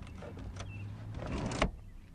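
Front passenger seat of a 2011 Jeep Wrangler being released by its lever and tipped and slid forward on its track, a mechanical sliding sound that builds and stops abruptly about one and a half seconds in.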